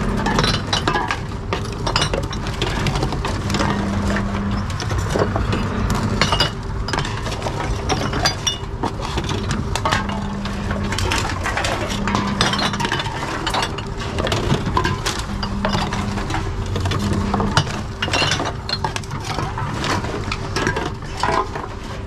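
Aluminium cans and plastic and glass bottles clinking as they are handled and pushed one after another into a TOMRA reverse vending machine. A low machine hum starts and stops several times in spells of about a second.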